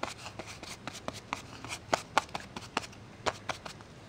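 Light, irregular taps and rustles of a VersaMark clear embossing ink pad being dabbed onto embossed cardstock, several taps a second.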